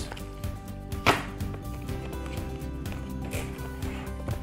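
Cardboard box and packaging being handled and pulled apart, with a sharp knock about a second in and a softer one later, over quiet background music.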